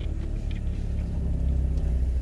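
Low, steady engine and road rumble heard inside the cabin of an original Chevrolet Trailblazer on the move, swelling slightly about halfway through.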